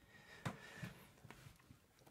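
Near silence: room tone with a few faint soft ticks, from a pen and hand moving over paper.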